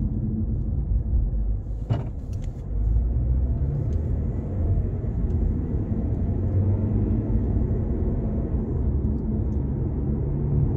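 Steady low rumble of a car driving, heard from inside the cabin, with a single short click about two seconds in.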